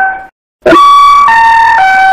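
Public-address announcement chime: three electronic tones stepping down in pitch. The tail of one chime fades out, and after a short gap the chime sounds again. It is the attention signal before a station announcement.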